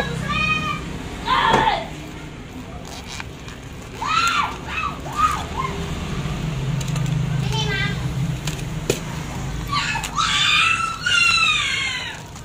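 High-pitched voices calling and shouting in short bursts, loudest near the end, over a steady low hum.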